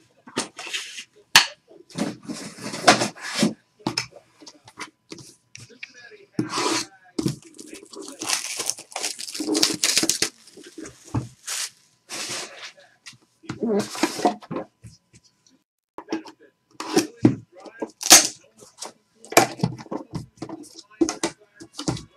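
A National Treasures basketball card box being opened and handled on a table: irregular scraping, rubbing and tapping of cardboard, with a longer stretch of cardboard rubbing about eight seconds in.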